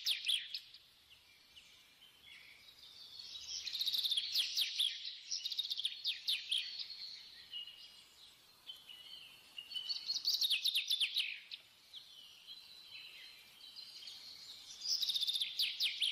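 Small birds chirping and trilling in rapid high-pitched series, in louder bursts every few seconds with fainter chirps between.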